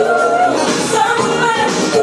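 Karaoke: loud pop music with singing over it.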